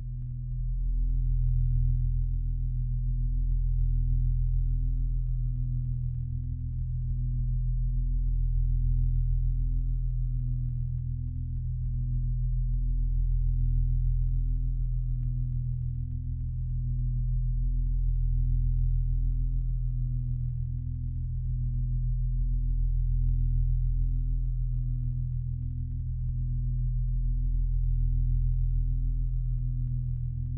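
A low, steady drone of pure tones that swells and fades in slow, even pulses about every two and a half seconds, with a slightly higher tone pulsing about once a second.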